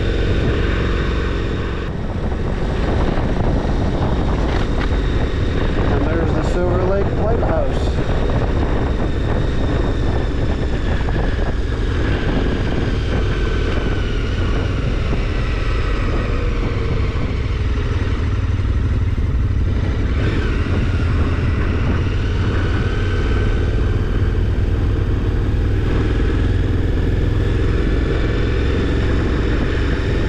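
KTM 1290 Super Adventure R's V-twin engine running steadily while riding at low speed. Its note rises and falls a few times with the throttle.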